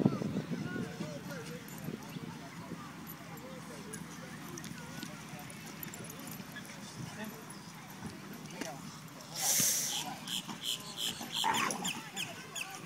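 Dogs play-fighting, with growls and whines that are loudest at the start. Near the end comes a short hiss, then a quick run of clicks and a brief rising yip.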